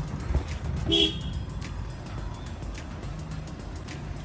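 Car in motion, a steady low engine and road rumble, with one short vehicle horn toot about a second in.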